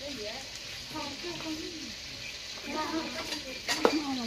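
Fresh bamboo shoots being shredded by hand with pronged scraping combs over a metal bowl, giving a steady rasping hiss. A single sharp clink comes near the end.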